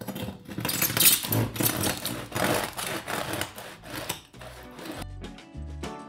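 Long knife sawing through the crisp crust of a freshly baked sourdough loaf, a dense crackling crunch of many small snaps. About five seconds in the cutting quiets and background music with a steady bass line comes in.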